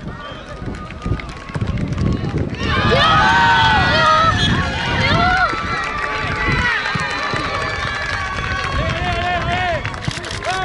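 Spectators and players cheering and shouting at a football goal, a sudden swell of many overlapping voices breaking out about three seconds in and carrying on, over a low rumble.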